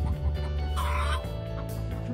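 A domestic hen gives one short call just under a second in, over background music with a steady low bass.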